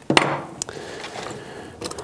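A sharp knock as a small metal torpedo level is set down on a cutting mat, then rustling and handling as a hand rummages in a leather tool pouch and draws out a screwdriver.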